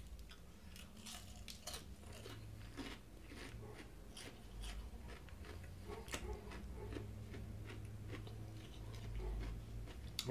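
Quiet, close chewing of crispy fried onion rings, with many small irregular crunches and crackles.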